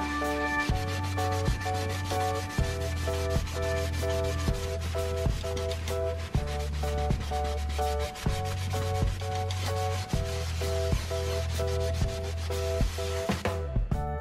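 A scouring sponge scrubbing the bottom of a kitchen sink, a continuous rubbing that stops just before the end. Under it runs background music with a steady bass line and repeating chords.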